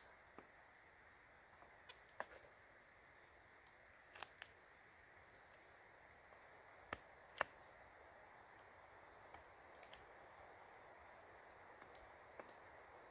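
Scattered small clicks and ticks of a Boker Plus Bushcraft Kormoran knife blade cutting into a cedar stick, over near silence, with the two sharpest clicks a little past halfway.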